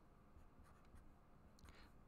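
Faint sound of a felt-tip marker writing on paper.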